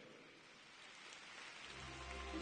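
Faint applause from a large audience, slowly swelling, with music starting to come in near the end.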